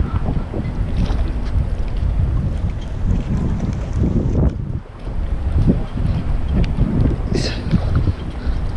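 Gusty wind from an approaching typhoon buffeting the microphone as a heavy low rumble, with short splashy noises now and then.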